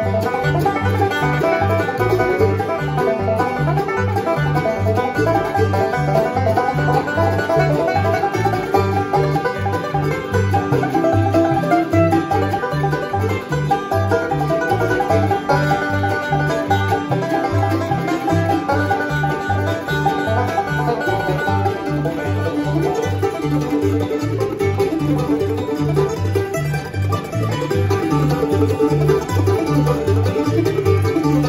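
Fast bluegrass instrumental with a five-string banjo taking the lead, picked in rapid rolls with fingerpicks, over a steady bass line on the beat.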